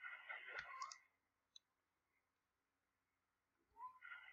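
Two or three faint computer mouse clicks in the first second, then near silence.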